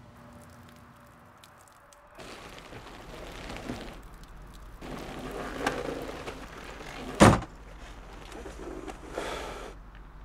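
A car door shuts with a single heavy thunk about seven seconds in, the loudest sound. Around it are a low steady hum of a car interior and rustling movement.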